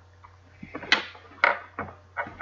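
Three sharp clunks of equipment being handled, a little under a second in, half a second later, and near the end, over a steady low hum.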